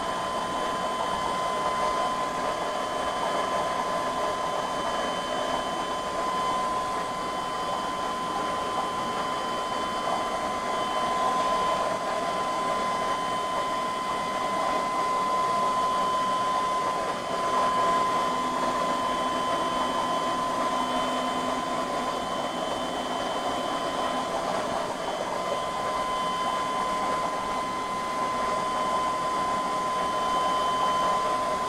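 Aquarium air pump and sponge filters running: a steady hiss with a constant high-pitched whine.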